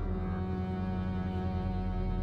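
Background score: a low, sustained note held over a deep drone, in the manner of bowed cello and double bass.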